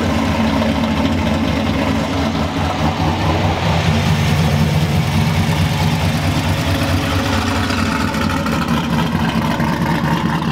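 LS-style V8 in a square-body Chevrolet pickup idling steadily and loudly, just after a cold start.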